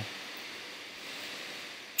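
Steady faint hiss of background noise: room tone with no distinct events.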